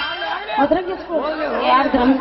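Speech: actors talking over stage microphones.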